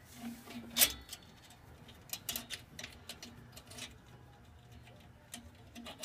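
Light metallic clicks and clinks from the drum-brake springs, shoes and self-adjuster cable of a 1967 Mustang's rear brake being handled and fitted by hand. The loudest click comes about a second in, with scattered smaller ones after.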